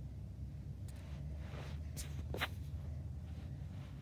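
Plastic Lego bricks of a puzzle box being handled and pushed, giving two light clicks about halfway through over a low steady rumble.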